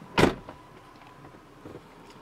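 A single short, loud thump about a quarter second in, then only faint background.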